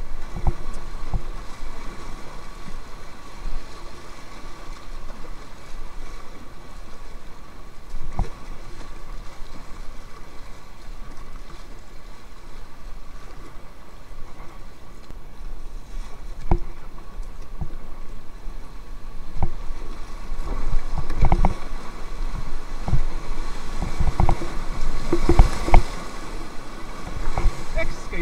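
Swollen river rapids rushing steadily around an inflatable kayak, with irregular knocks and splashes of waves and paddle against the boat. The knocks come thicker and louder in the last third as the boat runs rougher water.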